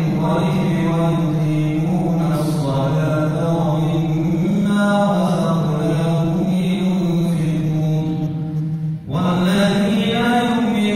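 A man's solo melodic religious recitation, sung through a microphone: long held notes that waver and ornament slowly up and down, with a brief pause for breath about nine seconds in.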